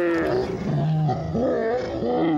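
A person's long, drawn-out anguished cry mixed with laughter. It holds and wavers in pitch, dips about a second in, then rises again.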